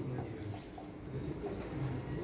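Faint, low bird cooing, a few short repeated notes over quiet room noise.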